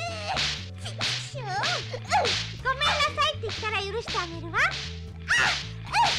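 Cartoon sound effect of a hand saw cutting through a tree trunk: rasping strokes about two a second, over music with a steady bass line and sliding high-pitched sounds.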